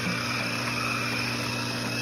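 Electric treadmill running at steady speed: a continuous motor hum under a thin, steady high whine from the motor and belt.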